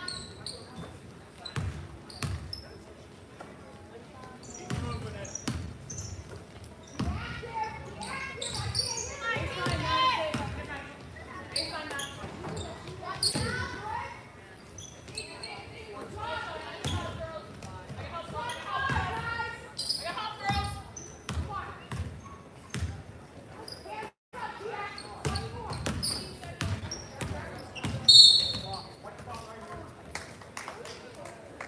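A basketball bouncing on a hardwood gym floor during play, with players' and spectators' voices echoing around the gym. Near the end comes a short, loud, shrill blast, a referee's whistle.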